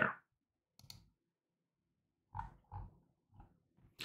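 Faint mouth noises from a man at a desk mic: a small click about a second in, then three short, low grunting sounds in the second half.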